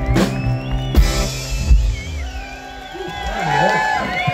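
Live rock band ending a song: final drum and cymbal hits in the first second, then the held chord rings out and fades. Voices rise near the end.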